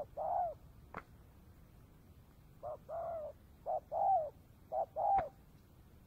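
Spotted dove cooing: four phrases, each a short note followed by a longer coo. Two sharp clicks are heard, about a second in and near the end.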